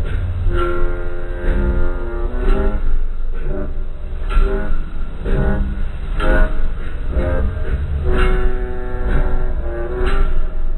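Loud music accompanying a fire show, with long held chords over steady heavy bass and a regular beat.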